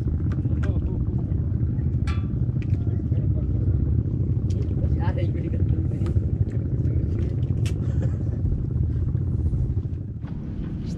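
Small boat engine running steadily with a low, even rumble, and a few faint clicks over it.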